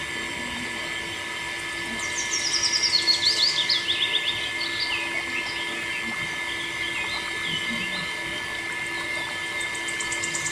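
Birds chirping and singing, with a fast trill that steps down in pitch between about two and four seconds in. Under it runs a steady hum from the small electric water pump as its stream pours into a tub.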